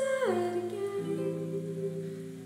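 A woman singing a long note that slides down shortly after the start and is then held, with plucked harp notes ringing underneath. A new low harp note comes in about a second in.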